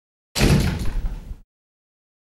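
A short sound effect on the closing logo: a sudden heavy thud-like burst of noise lasting about a second, then cut off.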